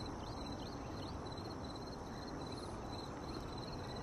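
Faint outdoor ambience: a steady low background hiss with a rapid series of faint high chirps running through the middle.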